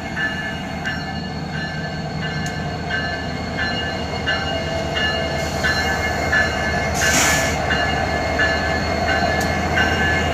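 EMD SD70ACe diesel locomotive passing close by at low speed, its two-stroke engine rumbling and growing louder, while a bell rings steadily about once every 0.7 seconds. A brief hiss comes about seven seconds in.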